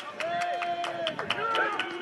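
Several players' voices shouting and calling out over an engaged rugby scrum, some calls drawn out, with sharp clicks scattered throughout.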